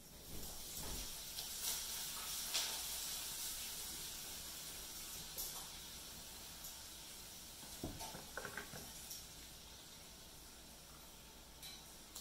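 Yarn rustling and rasping against fingers as it is drawn tight to tie a knot: a soft hiss that swells in the first few seconds and then fades slowly, with a few small rustles and clicks of handling.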